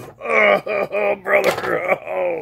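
A person's voice making a quick string of about five short, pained 'uh' grunts and moans, acting out a wrestler taking hits.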